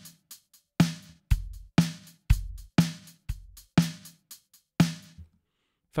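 A simple programmed drum-machine beat playing back, its timing loosened by a ReGroove groove with random timing added. Hits come about every half second with lighter ones between, and the beat stops a little after five seconds in.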